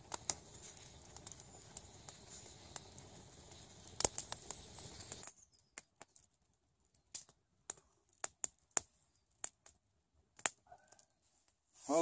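Wood campfire crackling faintly: irregular sharp pops and snaps. For the first five seconds or so they come over a faint steady hiss; after that the pops are sparser.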